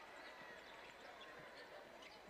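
Near silence: faint basketball arena ambience between lines of commentary.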